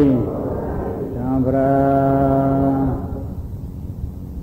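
Male voice of a Burmese Buddhist monk chanting a recitation: a phrase dies away at the start, then one long note is held steady for nearly two seconds and ends, leaving a quieter last second.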